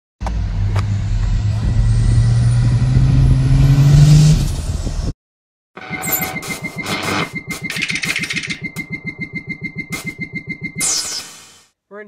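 A turbocharged truck engine accelerating, its pitch rising steadily for about five seconds. After a brief cut it is heard again with a fast, even pulsing and a faint high whistle.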